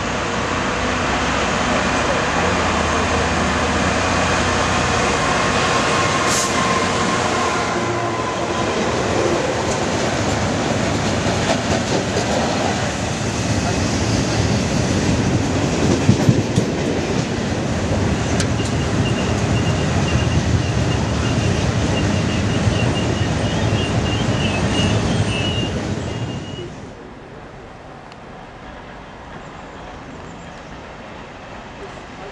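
A Class 66 diesel locomotive hauls a freight train past at close range, its engine and wagon wheels running loud and steady, with a brief high wheel squeal about six seconds in. Later the train noise carries on beside an electric passenger train at the platform, then drops suddenly to a much quieter background near the end.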